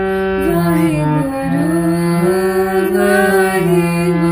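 Harmonium playing a slow shabad melody in held reed notes that step from pitch to pitch, with a woman's voice singing along in long, gliding notes.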